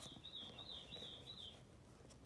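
A faint, thin, high warbling call, like a chirp drawn out for about one and a half seconds, then near silence.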